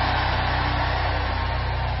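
Background music in a pause of the prayer: a steady, low held chord droning evenly, with a hiss of noise above it.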